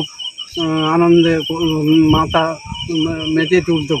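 Night insects, cricket-like, keep up a steady high pulsing chirp under a man's voice speaking in short phrases.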